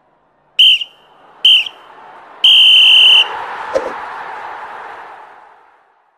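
Sports whistle blown twice briefly, then once long, over a rush of noise that swells and fades away near the end.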